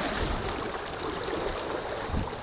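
Shallow sea water lapping and swishing at the shoreline, with an irregular low rumble of wind on the microphone.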